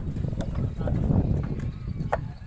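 Unfired bricks knocking against one another as they are unloaded and stacked: a few sharp clinks over a steady low rumble.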